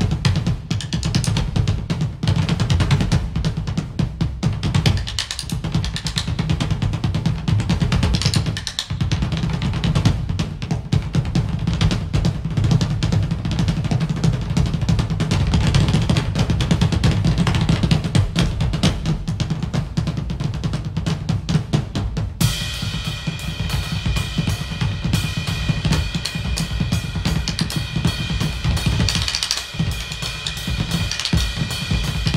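Two drummers playing a fast duet on two drum kits, with a shared bass drum mounted between them: dense snare, tom and bass drum strokes throughout. From about two-thirds of the way in, cymbals crash and keep ringing over the drumming.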